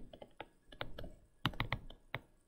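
Stylus tip clicking and tapping on a tablet screen while handwriting: an irregular run of light, quick clicks with short pauses between strokes.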